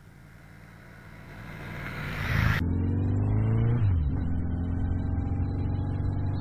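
A rushing noise swells louder for a couple of seconds and cuts off abruptly. Then a 1982 Yamaha XJ1100 Maxim motorcycle's inline-four engine is heard under way: its pitch climbs under acceleration, drops at a gear change, and settles into a steady cruise.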